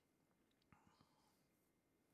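Near silence: room tone, with a couple of very faint ticks about a second in.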